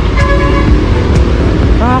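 Heavy road traffic running below, with a vehicle horn giving one short, steady toot a fraction of a second in.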